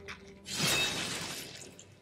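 Anime soundtrack: a sudden action sound effect hits about half a second in and dies away over about a second, with music underneath.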